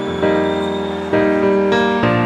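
A live band playing a slow ballad with no voice: sustained keyboard chords that change three times.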